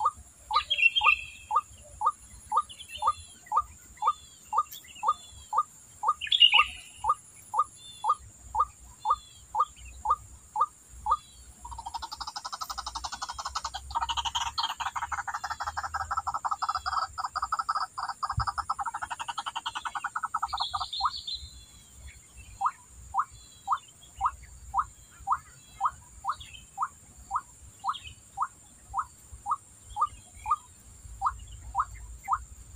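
A white-breasted waterhen calling: a single note repeated about twice a second. About twelve seconds in it breaks into a louder, fast continuous chatter for about nine seconds, then goes back to the steady repeated note. A steady high insect buzz runs underneath.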